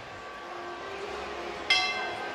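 A single sharp strike on a Malagueño procession throne's handheld bell, about three-quarters of the way in, ringing out and fading. This is the signal to the throne's porters.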